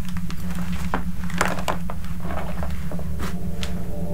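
A steady low drone with scattered soft clicks and rustles, like clothing and hands being moved at close range.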